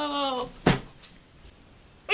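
A voice holding one long note that slides down in pitch and stops about half a second in, then a single sharp knock.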